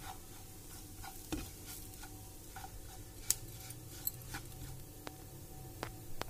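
Wooden spatula stirring and scraping semolina (suji) being roasted with vegetables in a nonstick pan: a soft gritty scraping broken by scattered light clicks of the spatula against the pan, the sharpest a little past the middle.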